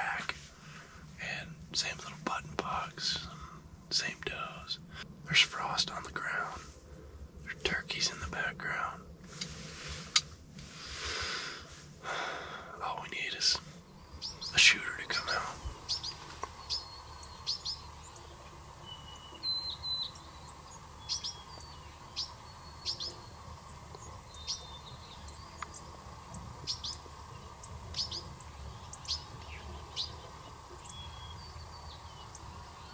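A man whispering for the first half. Then, over quiet outdoor background, a northern cardinal gives short sharp chip calls at about one a second.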